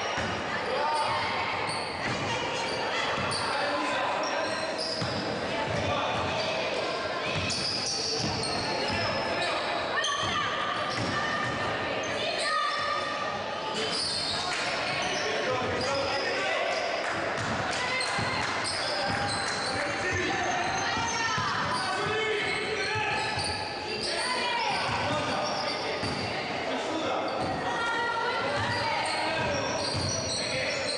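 Live sound of a women's basketball game in a gym: a ball bouncing on the hardwood floor, shoes squeaking, and players and spectators calling out, all echoing in the hall.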